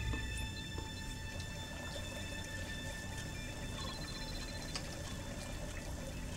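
A low, steady stream of liquid pouring into a fountain's pool: a man urinating into the fountain in place of its statue. Faint held music notes sit underneath.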